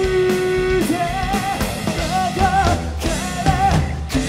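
Live rock band playing: a male singer holding long notes with vibrato over electric guitars and a drum kit.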